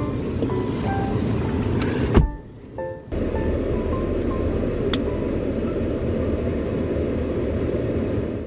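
Steady low rumble inside a car cabin with the car running, under soft background music with a few faint held notes. The sound drops out briefly about two seconds in.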